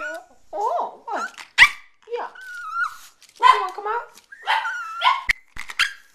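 Yorkshire terrier giving a string of about ten short, gliding yaps and barks, with one longer drawn-out whine partway through: demanding vocalising, which the owner takes as the dog wanting something, perhaps to eat again.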